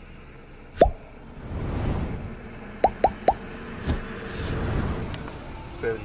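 Short plops, each falling quickly in pitch: one about a second in, then three in quick succession near the middle followed by a sharp click, over a low rumble.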